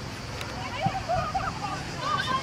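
High-pitched shouting voices of young football players calling on the pitch, starting about half a second in, over a steady open-air background, with a couple of short sharp knocks.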